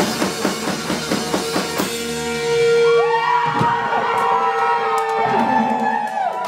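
Live rock band with electric guitars, bass and drum kit playing the end of a song: the drums hit steadily for about two seconds, then stop. The electric guitars ring on alone, holding a long note with other notes sliding up and down in pitch.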